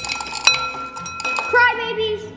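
Several small hard candy balls (Crybaby sour bubble gum) dropping out of a cardboard dispenser into a ceramic bowl: a quick run of clinks, with one sharp clink about half a second in that rings briefly, and a few more a little later.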